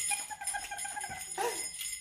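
A woman giggling in a high, squealing voice while tickling herself, over the shimmer of jingle bells shaken throughout.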